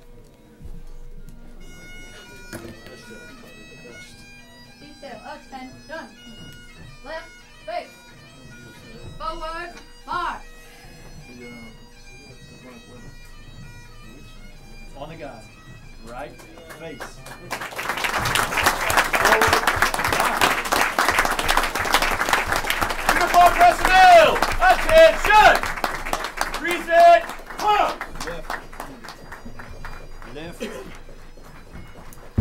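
Bagpipes playing, faint at first, then much louder from about 18 seconds in, with clapping and voices in the room.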